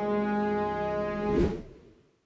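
A dramatic musical sting in the film score: one held low horn-like tone with rich overtones, with a sharp hit about one and a half seconds in, fading out just before two seconds.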